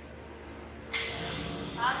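The pump of an impact-of-jet test rig is switched on. About a second in, a steady rushing hiss of water starts and keeps going as the jet begins spraying inside the enclosure.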